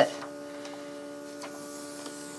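Makeup airbrush compressor running with a steady hum, with two faint ticks about a second apart.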